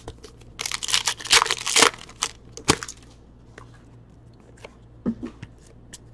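Hockey card pack wrapper torn open and crinkled, a rustling burst lasting about a second and a half, followed by a few light clicks and taps as the cards are handled.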